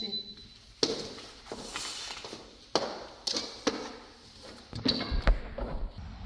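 Sliding glass patio door being handled and opened, a series of sharp knocks and clicks spread over several seconds. A low rumble comes in near the end.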